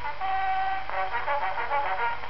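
Brass-led orchestral accompaniment playing the instrumental lead-in to a song, a melody of held notes, reproduced from an Edison four-minute wax cylinder of 1908 on a phonograph, with the narrow, muffled sound and steady surface hiss of the cylinder.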